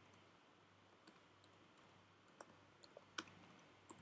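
Near silence with a handful of faint, scattered clicks from a computer keyboard and mouse as text is typed and a menu is clicked open. The loudest click comes a little after three seconds.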